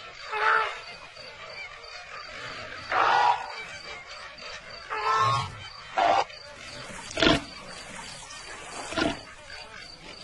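Cartoon animal vocal sound effects: six short grunting calls, the first three drawn out and pitched, the last three short and sharp. Behind them runs a steady, faint, high insect-like chirr.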